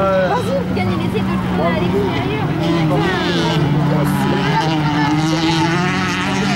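Several racing cars' engines running hard on a dirt circuit, a steady drone whose pitch drops about halfway through as the cars lift off and accelerate again.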